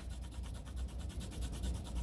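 Soft 3B graphite pencil rubbing across paper in hard-pressure shading strokes, faint, over a low steady hum.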